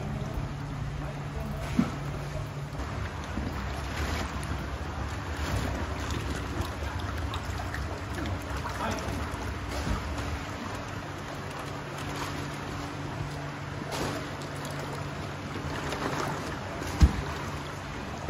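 A motor running with a steady low hum, its deepest part dropping away about ten seconds in, over a noisy background with scattered small clicks. One sharp knock near the end.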